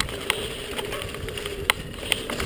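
Mountain bike rolling fast down a dirt forest trail: a steady rush of tyre and riding noise, broken by a few sharp knocks as the bike hits bumps.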